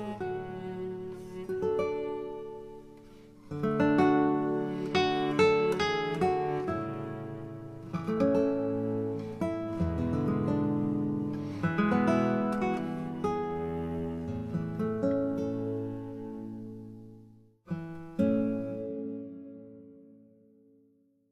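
Instrumental background music of plucked notes that ring and fade. It dies away over the last few seconds, stops briefly, then one last phrase rings out.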